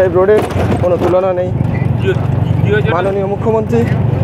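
Steady low rumble of the vehicle's engine and tyres as it drives along the road, with a person talking over it for much of the time.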